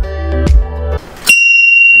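Background electronic music with a steady beat cuts off about a second in. A loud, steady, high-pitched electronic beep then starts and holds.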